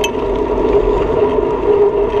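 Riding noise of a bicycle rolling on asphalt: a steady whir with a constant hum and wind rumble on the microphone, and a short tick at the start.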